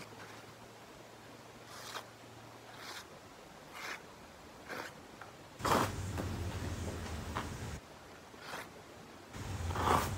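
Knife blade slicing through printer paper in short scratchy strokes, about one a second, then a paper towel being handled and sliced, with a louder rustle near the middle.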